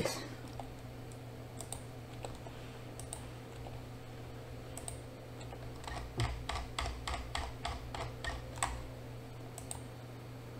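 Computer keyboard keys being pressed: a few scattered clicks, then a quick, even run of about ten taps, roughly three a second, in the second half, over a faint steady hum.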